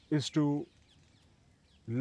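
A man's voice says two short words, then a pause of near silence lasting about a second before he speaks again at the end.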